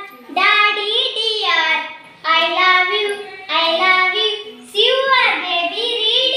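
A young girl singing an action rhyme without accompaniment, in four short phrases with brief breaks between them.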